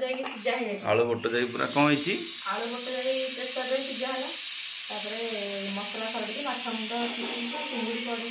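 A woman speaking, pausing briefly about halfway through, over a steady background hiss.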